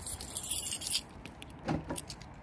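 A bunch of keys jangling for about a second, then a short low knock near the end as she gets into the car.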